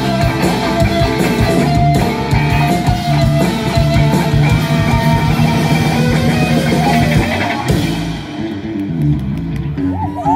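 Live rock band playing an instrumental passage: distorted electric guitars and bass over a drum kit. The drums drop away near the end, leaving the guitars ringing on.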